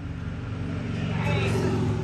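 A vehicle engine idling with a steady low hum. A person's voice comes in over it about a second in.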